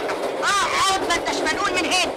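Raised, high-pitched voices over the steady running noise of a train, heard inside a passenger carriage.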